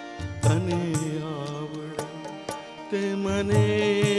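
Instrumental interlude of a live Indian light-music ensemble: sustained harmonium melody over tabla and dholak strokes, with deep dholak or tabla bass booms about half a second in and again near the end.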